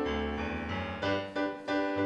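A school concert band playing held chords over a low bass line, the harmony changing about once a second.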